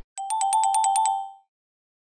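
An electronic ringing trill sound effect: about eight quick bell-like strikes over roughly a second, alternating between two close pitches like a phone ring, then fading away.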